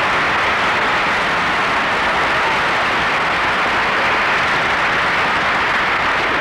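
Studio audience applauding steadily, a long round of applause greeting a cast member's entrance, heard on an old radio broadcast recording.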